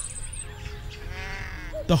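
Soft background music with faint held notes, and a brief high animal call in the middle.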